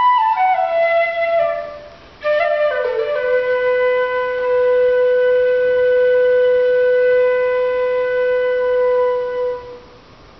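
Shinobue, a Japanese bamboo transverse flute, played solo. A short phrase stepping down in pitch fades out, then after a brief breath a new phrase starts with a sharp attack, slides down and settles into one long held low note that stops just before the end.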